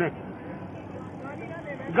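Steady outdoor city-street background noise, an even hum of traffic, without speech.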